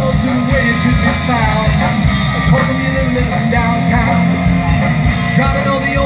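Live rock band playing loudly through a PA system: electric guitars, bass and drums.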